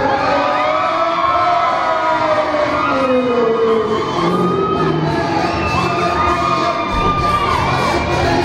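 Wrestling arena crowd cheering and shouting, many high voices overlapping, as a wrestler makes his entrance.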